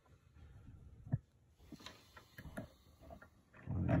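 Faint clicks and taps of a brass lock cylinder being handled and seated in the jaws of a metal bench vise, with one sharper click about a second in.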